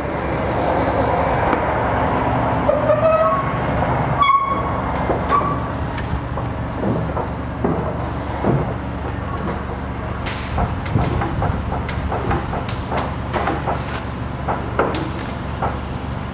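Metal clicking and knocking as a steel handle works the rear ratchet tensioner of a conestoga rolling-tarp system, tightening the tarp; a few short metal squeaks come in the first seconds. A steady low hum runs underneath.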